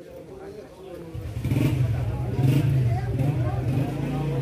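Motor vehicle engine running close by, growing louder about a second in and then holding steady, over people's voices in a busy street.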